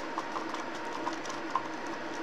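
A stir stick scraping and softly ticking against a plastic mixing cup as epoxy resin with purple mica powder is stirred, over a steady low hum.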